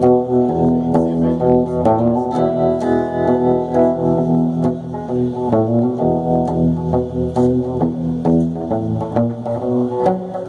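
Electric guitar played solo: an instrumental break between sung verses of a slow country ballad, single picked notes ringing over low bass notes.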